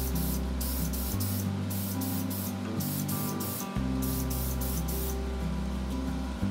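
Aerosol can of Krylon Gloss clear coat hissing in a series of short bursts, each under a second, laying light sealing coats over wood; the bursts stop about five seconds in. Steady background music plays underneath.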